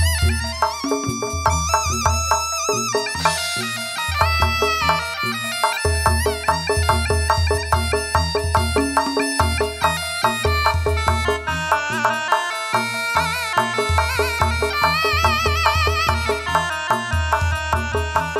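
Live traditional East Javanese ensemble playing kuda kencak dance accompaniment: a shrill reed shawm carries a wavering melody over drums and repeated deep low strokes.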